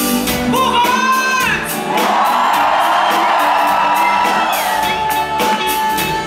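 A man singing live over acoustic guitar strumming: a sliding vocal line, then one long held note lasting about three seconds.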